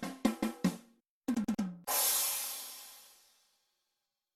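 A short drum-kit fill, a quick run of drum hits, ending about two seconds in on a cymbal crash that rings and fades away.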